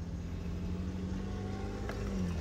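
A car engine idling, a steady low hum, with a single faint click near the end.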